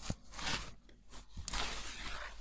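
Cloth rag rubbing over a varnished wooden door edge, wiping it clean before sealing tape is stuck on, in a couple of scrubbing strokes.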